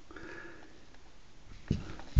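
A quiet pause with a faint sniff through the nose, then one short, soft knock near the end as the steel pistol is set down on the cloth-covered table.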